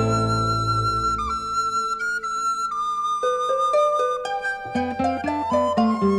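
Instrumental break of a 1960s Czech pop song. A flute holds long high notes that step slowly downward over sustained strings. Near the end a plucked accompaniment comes in on an even beat under a rising melody.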